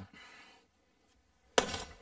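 A single sharp hammer blow on the wooden axle of a treadwheel crane, about one and a half seconds in, after a near-silent pause. It is knocking back the axle, which had begun to come apart.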